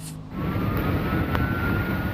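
Low, dense rumbling noise of a large building fire burning through a roof, starting just after the cut. A faint steady high tone drifts slightly lower over it, and a single sharp click comes about one and a half seconds in.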